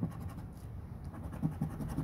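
Fingernail scratching the latex coating off a scratch-off lottery ticket on a wooden table, in quick repeated strokes.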